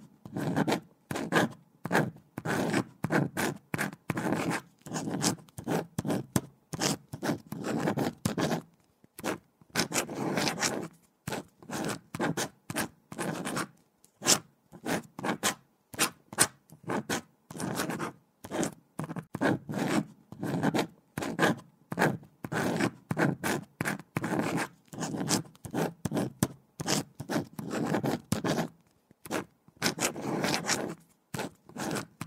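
A pen writing on paper: quick scratching strokes in irregular runs, several a second, with brief pauses now and then.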